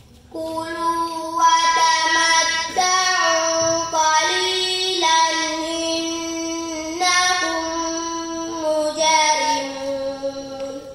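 A young girl chanting Quranic recitation in long, held melodic notes, phrase after phrase with short breaks for breath.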